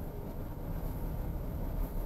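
Car driving slowly, heard from inside the cabin: a steady low engine and tyre rumble.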